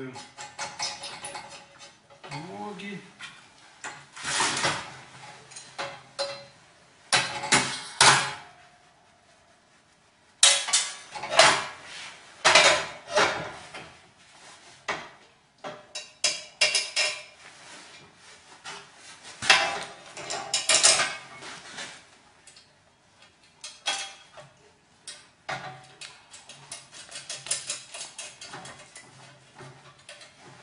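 Sheet-metal parts of a small portable stove clanking and rattling against each other as they are fitted together by hand. The sounds come in irregular bursts of sharp, ringing clanks with short pauses between them.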